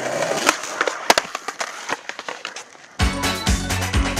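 Skateboard wheels rolling on concrete, with a few sharp clacks of the board, the loudest about a second in. About three seconds in, music with a heavy beat starts abruptly.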